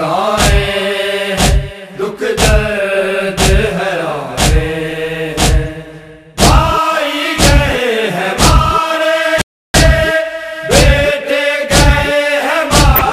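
A group of men chanting a noha in unison, with matam, hands slapping chests together about once a second in a steady beat. The sound cuts out for a moment about two-thirds of the way through.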